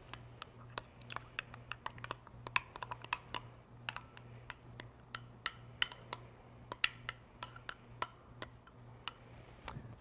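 A spatula tapping and scraping Greek yogurt out of a plastic tub into a glass mixing bowl: a run of light, irregular clicks, about three or four a second.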